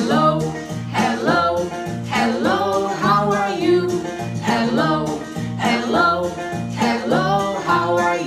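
Children's hello song: a sung melody over upbeat instrumental backing with a steady, repeating bass line.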